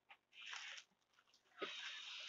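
Faint rustling of yarn packaging in a shipping box, in two short stretches: one about half a second in and another near the end.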